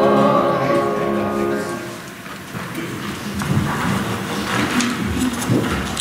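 Choir singing with accompaniment, ending on a held chord that fades out about two seconds in. Then quieter, irregular shuffling and light knocks of people moving about.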